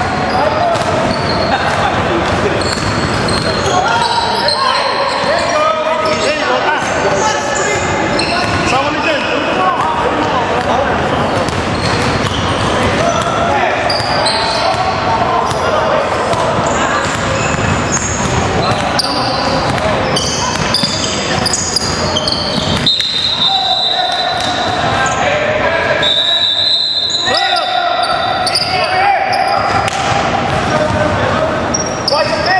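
Basketball game sounds in a reverberant gym: a basketball bouncing on the hardwood court under a steady wash of players' indistinct voices.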